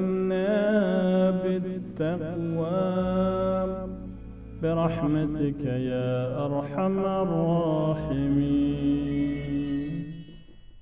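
Outro music: a chanted vocal melody with wavering, ornamented pitch over a low sustained drone, with a bright ringing chime coming in near the end.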